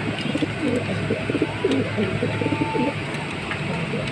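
Racing pigeons cooing in a loft: a run of low, repeated coos over a steady low hum.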